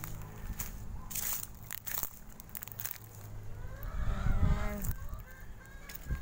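Chicken calling from about three and a half seconds in for a second or so, a pitched call that rises and falls. Before it, a few soft clicks and rustles over a steady low hum.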